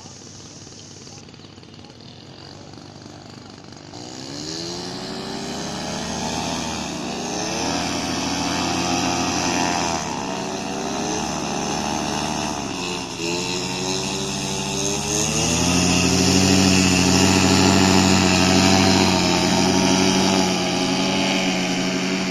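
Paramotor trike engine and propeller building up from low revs, the pitch rising and falling with the throttle as the wing comes up, then held at full power for the takeoff roll and climb, loudest in the last several seconds.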